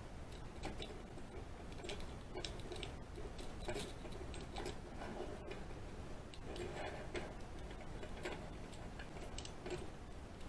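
Lock pick raking across the pins of a pin-tumbler lock held under a tension wrench: a run of light, irregular metal clicks and scrapes.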